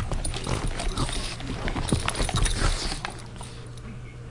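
A Boston terrier making short, agitated dog noises at a steam iron, mixed with scuffling clicks that ease off near the end.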